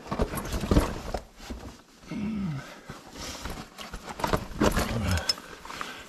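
Knocks and scrapes of a person moving over rough lava rock, with two short voice sounds falling in pitch, about two seconds in and again near the end.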